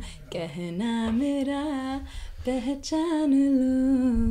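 A person humming a tune unaccompanied in long held notes, with brief breaks near the start and about two seconds in.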